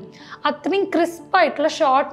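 A woman speaking, after a brief pause at the start.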